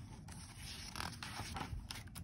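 A page of a glossy picture book being turned: soft rustling and sliding of paper, with a light tap about a second in and another near the end.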